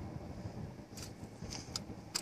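A few faint clicks from a children's fishing rod and reel being cast, over a low wind rumble on the microphone.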